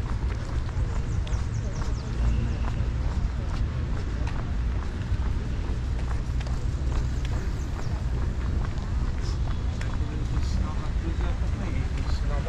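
Outdoor walking ambience: a steady low rumble with indistinct voices of passers-by talking and scattered light clicks.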